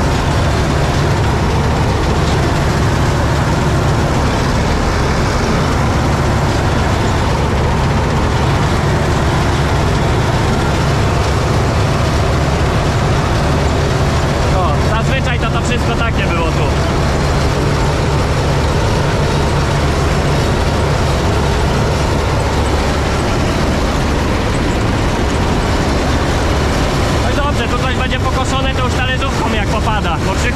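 Massey Ferguson 86 combine harvester running steadily while harvesting grain, its diesel engine and threshing machinery heard loud and unbroken from inside the cab.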